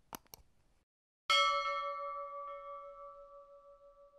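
Two quick clicks, then a single bell chime about a second in that rings on with a clear steady pitch and slowly fades.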